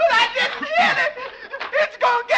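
A man's short, broken chuckling laughter: several quick voiced bursts.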